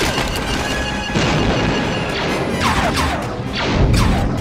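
Film battle soundtrack: orchestral score mixed with blaster fire and explosions, with a couple of falling, whistling sweeps in the second half.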